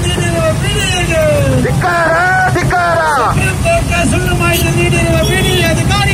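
A loud voice calling out in long, drawn-out phrases through horn loudspeakers on an auto-rickshaw, over a steady low rumble of motorcycle and auto-rickshaw engines.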